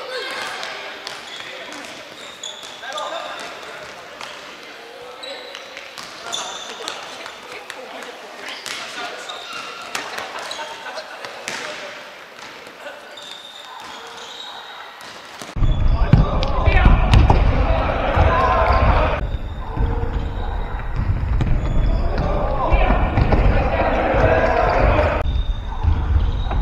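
Futsal ball being kicked and bouncing on a wooden sports-hall floor, with players calling out, all echoing in the hall. About two-thirds of the way through, the sound turns abruptly louder, with a heavy low rumble under the voices.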